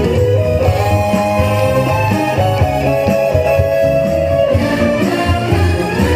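Instrumental passage of a trot song's backing track played over a stage PA: a steady beat and bass under a held lead melody line, with guitar.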